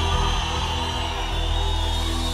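Live worship band music without voice: sustained held chords over a low bass.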